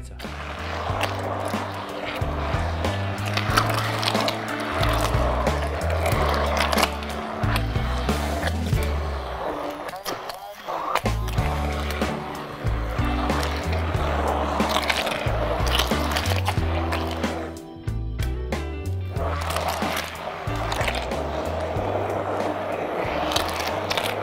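An immersion blender runs through a thick cheese, sugar and egg mixture for a cheesecake batter, with the eggs added one at a time. Background music with a stepping bass line plays throughout.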